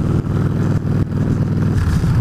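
Victory Jackpot's V-twin engine running steadily while the motorcycle is ridden, heard from the rider's seat.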